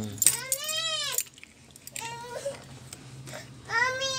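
A cat meowing: a long meow that rises then falls in pitch, a short one about two seconds in, and another long one starting near the end. A few light clicks near the start.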